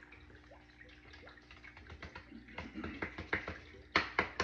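Paper crinkling as a sheet is curled into a funnel to pour loose glitter back into its jar: faint at first, then a quick run of small crackles and taps over the last couple of seconds, the sharpest one at the end.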